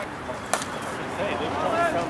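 A bat hitting a softball: one sharp crack about half a second in, with faint voices of players and onlookers.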